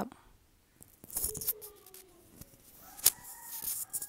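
Metal spoon mixing a thick chicken and mayonnaise filling in a glass bowl: soft scraping and stirring, with a sharp clink against the glass about three seconds in.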